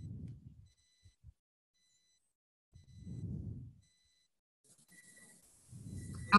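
Faint, muffled low sounds picked up by an unmuted microphone on a video call: two short swells, one at the start and one about three seconds in. A thin, steady high whine sits over them, and the sound cuts out to dead silence between them.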